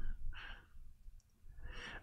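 A man breathing out in a sigh, then breathing in, close to the microphone: two soft breaths, one just after the start and one near the end.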